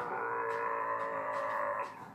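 A man imitating a deep, loud fart with his mouth: one steady drawn-out note that stops shortly before the end, heard through a TV speaker.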